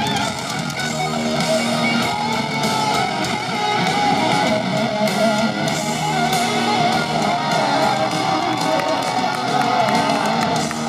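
A live rock band playing a loud instrumental passage with electric guitar to the fore and drums behind, recorded from among the audience.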